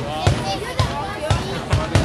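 Mascoli, the traditional black-powder ground charges of the Recco fire festival, going off in a rapid chain: a series of loud bangs about half a second apart.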